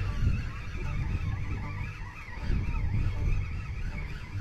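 Spinning reel being cranked to reel in a hooked fish, its gears giving a wavering whine, over a steady low rumble of wind on the microphone.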